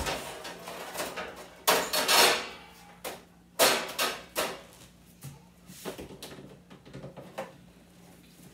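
Kitchen clatter of cookware and kitchen fittings being handled: a few loud knocks and a longer scrape in the first half, then lighter clicks and taps.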